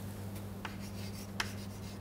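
Chalk writing on a blackboard: a few short taps and scratches as a stroke of an equation is written, over a steady low hum.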